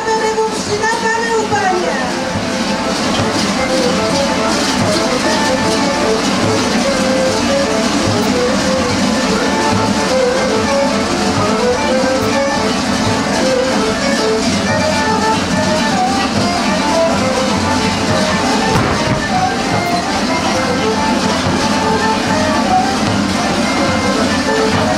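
Bulgarian folk dance music with a quick melody of short notes, over the continuous clanging of kukeri bells as the masked dancers move.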